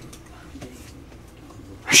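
A brief pause in a dialogue with only faint background hum, then a man's voice starts saying "Ah" right at the end.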